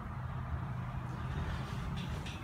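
Steady low rumble with a constant hum, like an engine or machinery running nearby.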